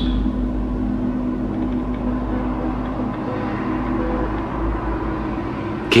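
Low, steady drone: a deep rumble under a few held tones, with a higher tone joining briefly past the middle.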